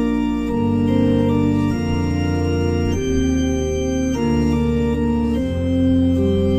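Organ playing a hymn: full, sustained chords that change every second or so.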